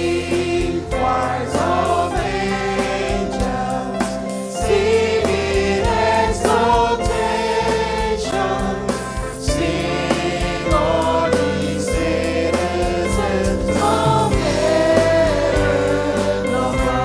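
Gospel-style choir singing in full voice over band accompaniment, with a steady drum beat and a sustained bass line.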